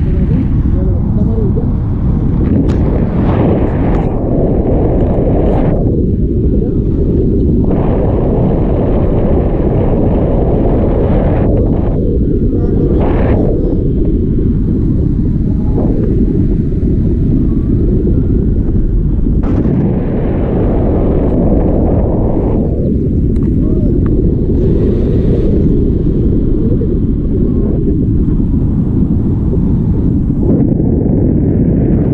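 Wind buffeting the microphone of a pole-mounted action camera during a tandem paraglider flight: a loud, steady rumble with a few brief gustier flares.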